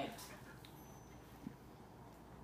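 Quiet room tone with one short, faint tap about a second and a half in.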